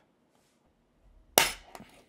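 Spring-loaded automatic center punch firing once into a titanium backup plate: a single sharp metallic pop about one and a half seconds in, followed by a few faint clicks as the tool is lifted.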